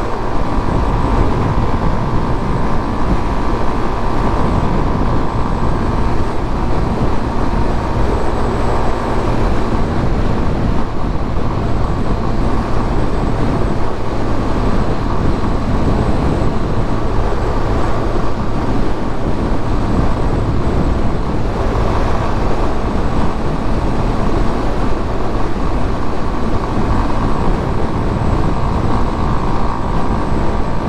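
Yamaha Fazer 250's single-cylinder engine running steadily at highway cruising speed, mixed with wind rushing over the microphone.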